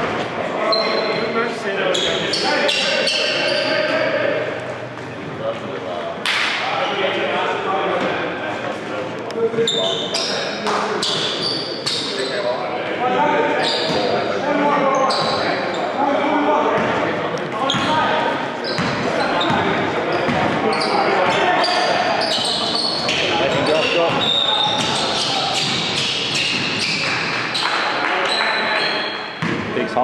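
Basketball game sounds in a gym: a basketball bouncing on the hardwood floor as it is dribbled, as a string of short sharp strikes, with players' voices calling out, echoing in the large hall.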